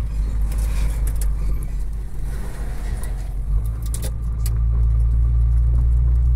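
Heavy truck's engine droning low inside the cab while driving a rough road, with a few sharp clicks and rattles from the cab. The drone grows louder about four seconds in.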